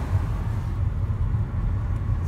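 Steady low rumble of a car driving along a road, heard from inside the cabin.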